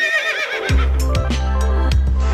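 A horse whinny, one wavering call falling in pitch, cut in as a sound effect; under a second in, theme music with a deep bass line and a steady beat takes over.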